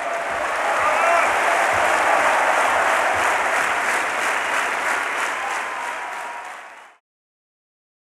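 Audience in an opera house applauding, with a few voices calling out in the first seconds. The applause fades away near the end and is cut off.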